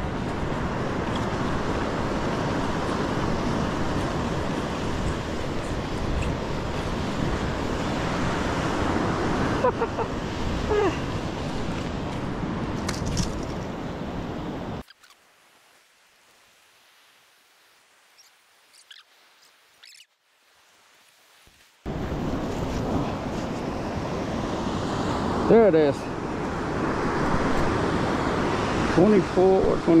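Steady rush of ocean surf breaking on a beach, with wind on the microphone. It cuts out to near silence for about seven seconds midway, then comes back.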